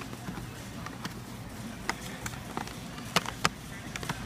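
Foil-lined kraft paper bag crinkling as hands pull its top open, with scattered sharp crackles, the loudest a little after three seconds in, over a steady low hum.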